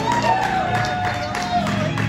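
Spectators cheering and clapping after a base hit, with one long high shout that rises at first and then holds for about a second and a half.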